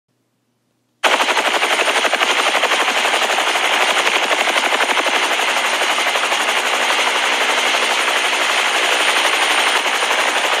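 Helicopter rotor sound effect: a loud, fast, steady chopping that starts about a second in and holds evenly throughout.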